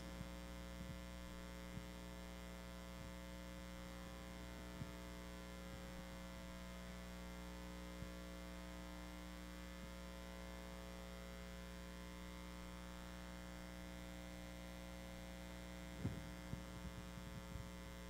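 Steady electrical mains hum at a low level, a buzz of many evenly spaced overtones, with a few faint ticks.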